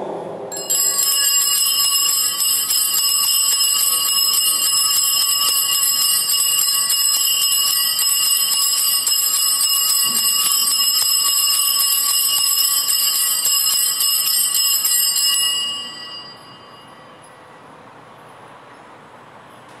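A cluster of altar bells (sanctus bells) shaken in continuous jangling ringing for about fifteen seconds, as rung at the elevation during the consecration of the Mass. It then stops and rings away to quiet.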